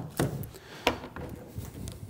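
Short knocks and rubs from handling a roll of double-sided foam tape and a hand roller on a metal workbench, about five separate taps spread over two seconds.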